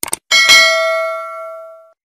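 Notification-bell sound effect from a subscribe animation: two quick mouse clicks, then a bell ding with several ringing tones that fades away over about a second and a half.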